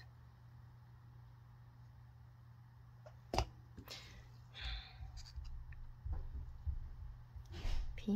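Small handling noises from resin-pouring work with paper mixing cups and a wooden craft stick: a sharp knock about three seconds in, then scattered soft scrapes and rustles. A steady low hum runs underneath.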